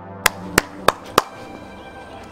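Four sharp knocks in quick, even succession, about a third of a second apart, over faint background music.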